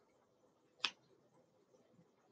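A single sharp click a little under a second in, from a marker being handled; faint room tone otherwise.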